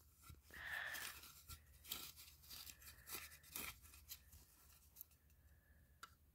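Faint handling of a smoke detector's plastic cover as it is fitted back onto its base: a soft scrape about half a second in, then scattered light clicks and taps.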